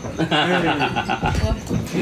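People's voices around a table, with quick repeated pulses like a burst of laughter.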